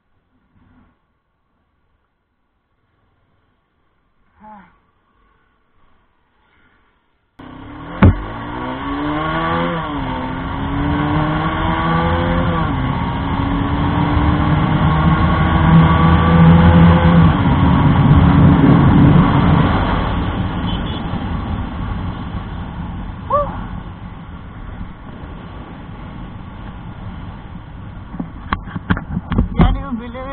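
Near silence for about seven seconds, then the sound cuts in with a sharp click. A Bajaj Pulsar 220F's single-cylinder engine accelerates hard through the gears, its pitch climbing and dropping at two upshifts before a long third-gear pull, with heavy wind noise on the microphone. The throttle eases off about twenty seconds in and the engine runs on lower.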